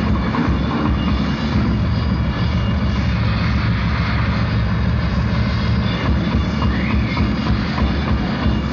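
A live rock band playing a dense, bass-heavy instrumental passage with drums, bass, guitars and keyboards, heard steady and muffled on an old tape recording.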